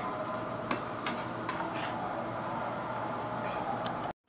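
Hot ghee sizzling steadily around fox nuts (makhana) frying in a non-stick pan, with a few faint crackles scattered through.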